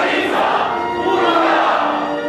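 Operetta chorus and ensemble singing full-voiced together with an orchestra.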